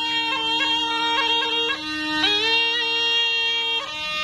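Snake charmer's been (pungi) music: a reedy melody that slides between held notes over an unbroken drone.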